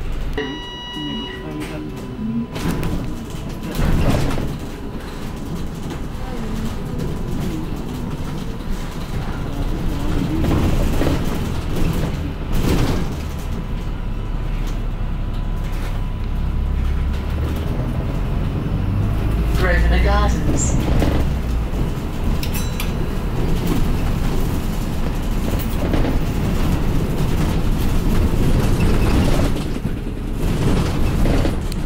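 London double-decker bus driving through city streets, heard from on board: steady engine and road noise, with the engine rumble growing louder for several seconds around the middle. A brief electronic beep sounds near the start.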